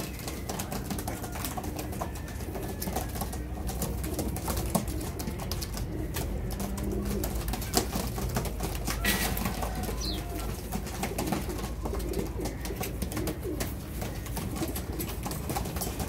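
Several domestic pigeons cooing over a steady low rumble.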